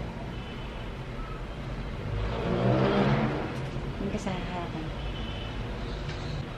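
A motor vehicle's engine over a steady low rumble, swelling to its loudest about two to three seconds in and then fading.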